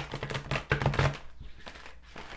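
A deck of oracle cards being shuffled by hand: a rapid run of card clicks and slaps, busiest in the first second and thinning out after.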